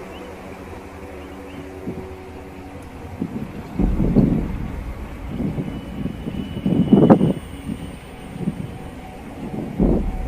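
Wind buffeting a handheld camera's microphone in irregular gusts, strongest about four and seven seconds in and again near the end, over a low steady rumble.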